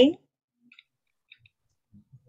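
A woman's voice finishing a word in the first moment, then near silence with a few faint, brief clicks.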